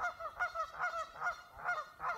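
Geese honking: a rapid run of short, pitched calls, about five a second.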